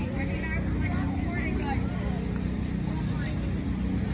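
Indistinct voices of people talking in the background over a steady low hum, with a single short click near the end.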